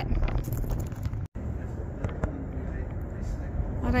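Wind rumbling on the microphone outdoors, a steady low noise without distinct events, broken by a split-second dropout a little over a second in; a man's voice begins at the very end.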